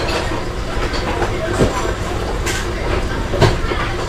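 Kitchen tap running steadily into a stainless steel sink, with a few light knocks of dishes being washed.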